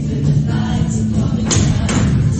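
Show choir singing to musical accompaniment, with one sharp hit about one and a half seconds in.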